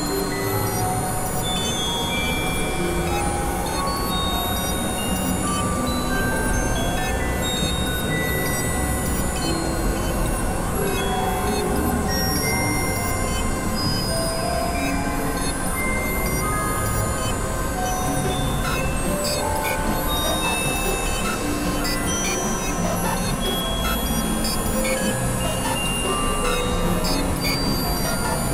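Dense, layered experimental electronic music: several tracks playing over each other at once. It forms a thick, steady wash with many short held notes scattered at different pitches, and no clear beat.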